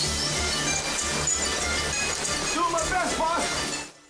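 Film soundtrack music playing steadily with a pulsing low beat, with a short laugh near the start and a voice about two and a half seconds in; it cuts off just before the end.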